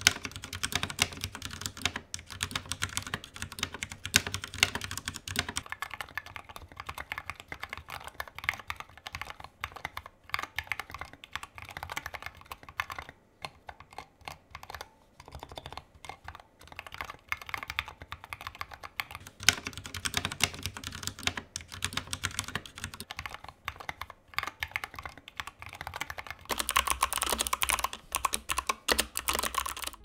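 Typing on three 60% mechanical keyboards in turn: a Ducky One 2 Mini, a custom build with Tealios V2 switches in an aluminium Tofu case, and a budget Motospeed CK61. A steady stream of key clacks whose character changes each time the keyboard changes, loudest near the end.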